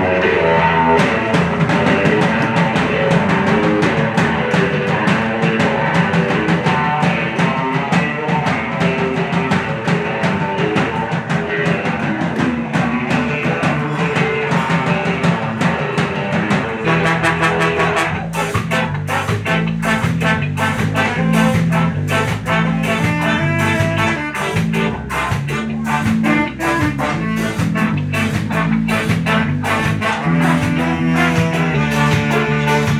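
Ska band playing live, with trombone, saxophone, electric guitar and drum kit. A little past halfway the arrangement changes and the bass line comes forward under a steady rhythmic pattern.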